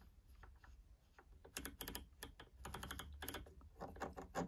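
Large rotary knob of a Cambridge Audio Evo 150 streaming amplifier being turned, giving a run of faint clicks as it steps through its positions: sparse at first, then quicker clusters from about a second and a half in.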